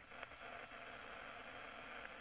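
Faint, steady hiss of an open space-to-ground radio voice link, with no one talking over it.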